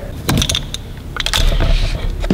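A handful of sharp clicks and light rattles as a plastic retaining clip on a hose behind a Mazda RX-8's front bumper is worked loose with a metal tool.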